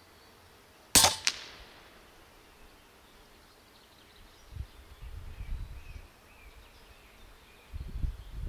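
A single shot from a Huben K1 .25-calibre regulated PCP air rifle firing a slug: a sharp crack about a second in, followed a third of a second later by a fainter second click. Low rumbling comes and goes later on.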